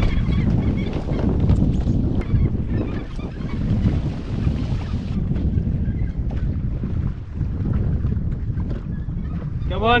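Wind buffeting the microphone and water slapping against the hull of a drifting jet ski, with seabirds calling from a nearby feeding flock.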